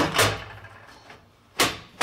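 Metal elevator landing sill being dropped and seated into its notched plywood floor over carriage bolts: two sharp knocks about a second and a half apart.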